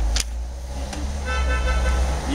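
Street traffic with a steady low rumble and a single click just after the start. A short, high-pitched car horn sounds through the last two-thirds of a second.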